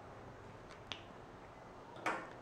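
Quiet room tone with a single sharp click about a second in, from a whiteboard marker being handled.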